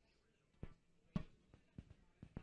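Three faint, short knocks about half a second apart in a quiet room, the middle one loudest.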